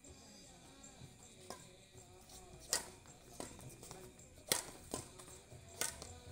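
Badminton rackets striking a shuttlecock in a rally: sharp cracks, the loudest almost three seconds in, then two more about a second and a half apart, with quieter hits between. Background music plays underneath.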